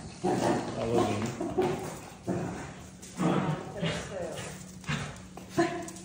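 Pet dogs whining and yapping excitedly in an arrival greeting, in short bursts, with a person's voice mixed in.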